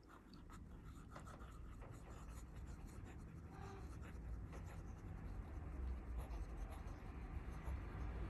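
Faint scratching of a fountain pen's 14k gold music nib on thin Tomoe River paper during continuous handwriting. It starts almost silent and grows a little louder as the writing goes on.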